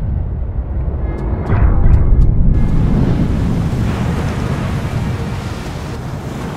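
Low rumble of big ocean waves breaking, layered with cinematic trailer music. The rumble swells to its loudest about two seconds in, with a few sharp ticks before it, and a hiss of spray joins about halfway through.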